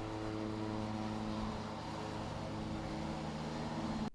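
John Deere 1500 TerrainCut front mower's engine running steadily as the mower drives and turns with its deck lowered.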